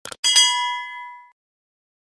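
Subscribe-button animation sound effect: two quick clicks, then a bell-like notification ding with several tones ringing and fading over about a second.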